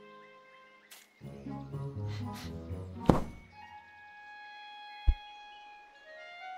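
Orchestral film score with long held notes, broken by two heavy thumps from the cartoon rabbit climbing out of his burrow: a loud one about three seconds in, and a short, deep one about two seconds later.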